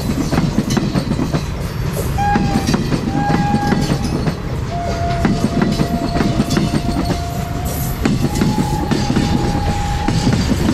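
Railway coaches of an accident relief train rolling past close by: a heavy rumble with the clatter of wheels over rail joints. Steady wheel squeals come and go four times, the longest lasting about three seconds.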